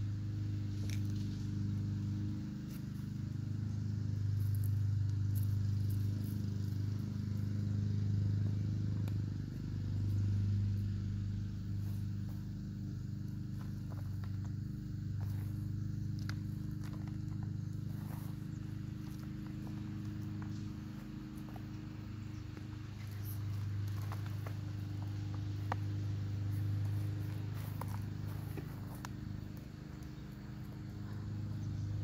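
A steady low machine hum, swelling and easing slightly in level, with sparse soft crackles and ticks of hands digging and sifting through potting soil in a plastic container as sweet potatoes are pulled out.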